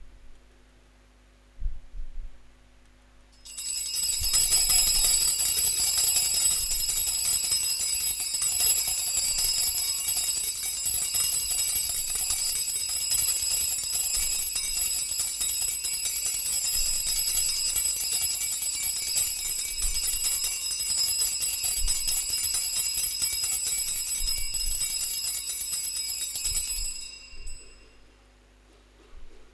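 Altar bells rung without pause for about twenty-three seconds, starting a few seconds in and stopping just before the end, as the monstrance is raised in the Benediction blessing with the Blessed Sacrament.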